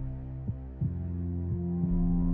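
A heartbeat sound effect beating in lub-dub pairs about once a second, over a steady low ambient music drone.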